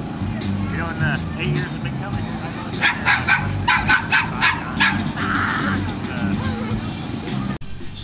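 A dog yapping in a quick run of short, sharp barks about three seconds in.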